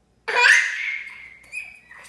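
A toddler's laugh: one loud, high-pitched squealing laugh that starts about a quarter second in and trails off, with a short second squeal near the end.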